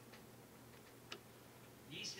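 Near silence: faint room tone broken by one short click about a second in, with a few fainter ticks around it.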